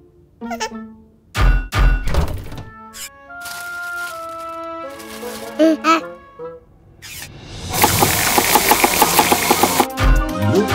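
Cartoon soundtrack: background music with sound effects, two heavy thumps about one and a half seconds in, then a loud, busy noisy stretch with rapid pulses over the last two seconds.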